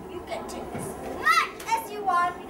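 A child's voice giving two short, high-pitched wordless cries, each rising and falling, about a second and a half in.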